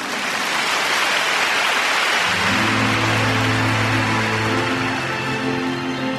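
Arena audience applauding. About two seconds in, music starts with sustained low notes and rises over the fading applause.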